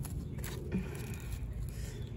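Small pruning snips clipping a thin cactus stem: a sharp click at the start and another short one about half a second in, over a steady low outdoor rumble.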